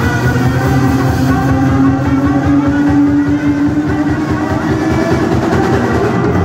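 Loud live music from a saxophone, synthesizer and drum-kit trio playing electronic jazz, with a heavy droning synth low end. One held tone slides slowly upward through the middle.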